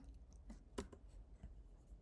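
A few faint, isolated computer keyboard key presses, the clearest about three quarters of a second in, over a low steady hum.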